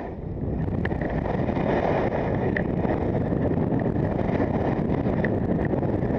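Wind rushing over the microphone of a camera carried by a skier going downhill, mixed with skis running over packed snow. The rush builds over the first second, then holds steady and loud.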